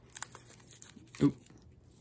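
Faint crinkling of a foil candy wrapper handled between the fingers, a few soft crackles, with a short spoken 'oop' a little over a second in.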